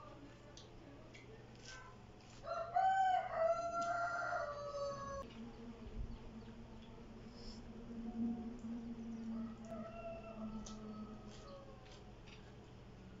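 A rooster crows once, a loud drawn-out call starting about two and a half seconds in and lasting about two and a half seconds. A fainter, lower drawn-out call follows for several seconds.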